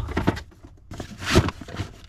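Scattered light knocks and rustles of handling, the loudest about one and a half seconds in.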